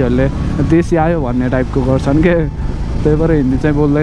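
A man talking continuously over the steady low rumble of a motorcycle being ridden.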